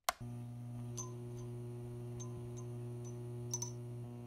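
A wall switch clicks on, then a neon sign hums with a steady electrical buzz, broken by a few small irregular ticks and crackles.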